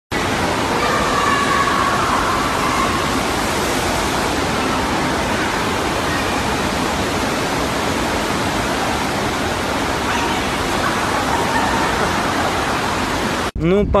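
Steady rush of water pumped over an indoor standing-wave surf simulator, with faint voices in the background. It cuts off suddenly near the end.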